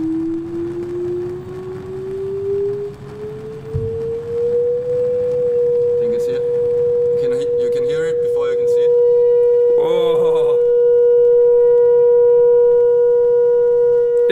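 Test tone played through the loudspeaker of a Pyro Board gas-flame table, gliding up in pitch for about five seconds and then held at one pitch to set up a standing wave in the board, picking up overtones in its second half. A low rumbling noise runs underneath.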